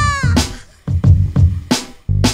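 Background music with a beat: a held, pitched vocal-like note ends just after the start, the music briefly drops away, then the beat with heavy bass hits comes back about a second in.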